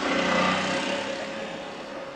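Motor scooter engine pulling away and fading into the distance, loudest about half a second in. It comes from a film soundtrack played over a lecture hall's loudspeakers.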